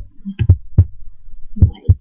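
An irregular run of dull thumps and taps close to the microphone, about six in two seconds, some with a sharper click on top.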